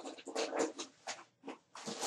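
Irregular rustling and small knocks from someone rummaging off-camera for a pen: several short scuffling sounds, a couple of clicks, and a louder rustle near the end.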